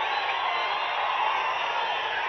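Large crowd of people shouting and cheering: a steady, dense wash of many voices at once.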